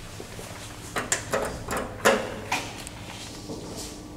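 Elevator doors opening: a cluster of clunks and rattles about a second in, loudest around two seconds in, over a steady low hum.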